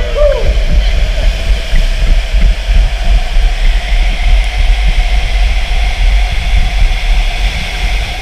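Inflatable tube raft sliding through an enclosed water-slide tube: a loud, steady low rumble of rushing water and the raft against the tube walls, with a faint steady hum over it.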